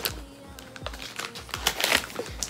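Gift wrapping paper being torn open and crinkled by hand: a quick, uneven run of crackles and rustles, busiest in the last half second.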